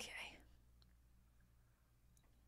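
Near silence: a softly spoken 'okay' at the very start, then only a faint steady low hum.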